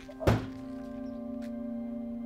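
A single sharp thunk about a third of a second in, followed by ambient music of several steady sustained tones that ring on.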